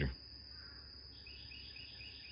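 Faint, quiet outdoor morning ambience. From about a second in, a quick, regular series of faint high chirps comes in, from an insect or a bird.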